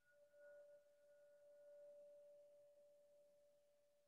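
A single faint chime tone, struck and left to ring: one clear steady pitch that carries on throughout, with a higher overtone that dies away about halfway.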